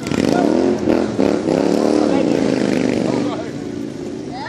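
A motor vehicle engine revving up and back down over about three seconds.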